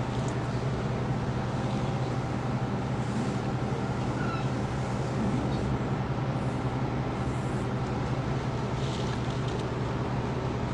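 A steady low hum under an even hiss, with a few faint ticks.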